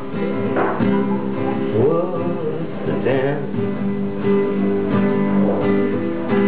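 Acoustic guitar strummed, its chords ringing on steadily between repeated strokes.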